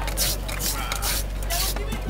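A metal hand scraper shaving a block of ice for a snowball (shaved-ice drink), four short rasping strokes about two a second.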